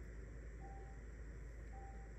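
Faint electronic beep: a single short tone repeating about once a second, heard twice, over a low steady hum.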